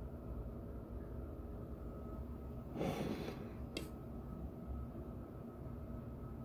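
Quiet room hum with faint steady tones. About three seconds in comes a short rush of air-like noise, then a single brief click.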